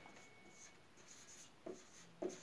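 Faint felt-tip marker strokes on a whiteboard: a few short, scratchy squeaks.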